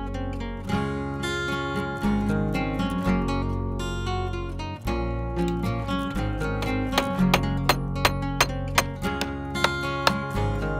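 Acoustic guitar music, strummed and plucked, with a run of sharp plucked notes in the second half.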